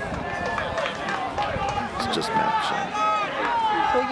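Several voices shouting at once in raised, high-pitched calls with no clear words: spectators and players yelling during open play at a schools rugby match.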